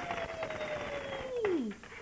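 Coins rattling and clinking as they are shaken out of a plastic piggy bank onto a table. Over it runs a single whistle-like tone that slides slowly down in pitch, then drops away sharply and stops shortly before the end.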